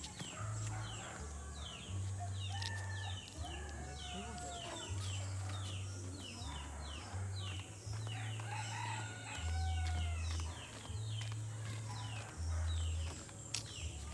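Chickens around the yard: a rooster crowing and hens clucking, with many short high bird chirps throughout. Under them run low bass notes that change every half second or so, like background music.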